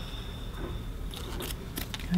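Scissors cutting through the bandage of a plaster cast on a lower leg: a few short, sharp snips, mostly in the second half.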